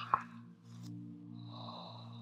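A woman's soft, breathy open-mouthed exhale, letting go of a held breath, over a low, steady ambient music drone. A short click comes just after the start.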